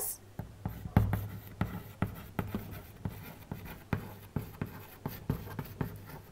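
Chalk writing on a chalkboard: a run of quick, irregular taps and short scratches as a word is written out.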